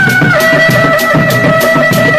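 Sundanese reak music: dogdog drums beaten with sticks in a fast, steady rhythm, under a reedy wind instrument that holds long high notes and drops to a lower note about a third of a second in.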